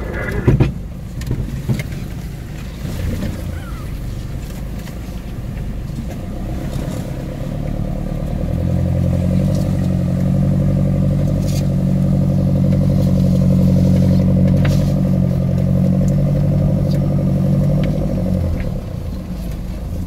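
Off-road 4x4's engine running, heard from inside the cab while driving a rutted dirt track, with a loud knock just after the start and a few lighter knocks later. From about eight seconds in the engine note grows louder and holds steady until near the end.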